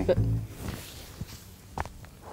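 A couple of faint footsteps from boots on a concrete sidewalk, over a low outdoor hiss.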